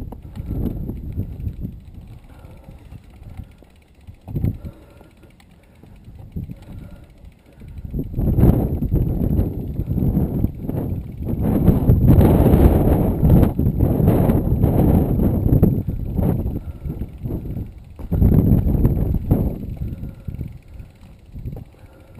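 Mountain bike ridden over a rough dirt and rock singletrack: a rumbling, rattling ride noise from the tyres and bike over bumps and stones. It is quieter for a few seconds early on, then loud and busy through the second half.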